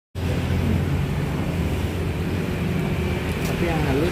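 Steady low hum and rumble of background noise, with a voice beginning near the end.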